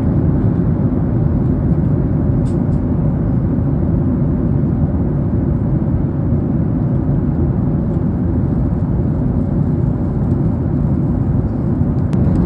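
Steady, loud low-pitched noise with no clear tone or rhythm.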